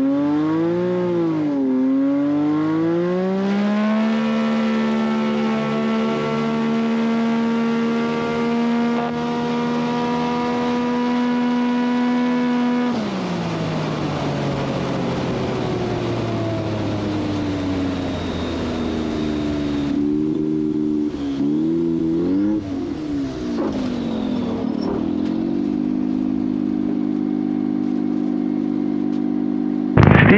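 Light bush-plane propeller engines in a STOL drag race. The engine drone swoops in pitch as a plane passes, holds a steady high pitch at full power, then slides down in pitch as the power is pulled back about halfway through. Near the end comes a lower, steady engine drone.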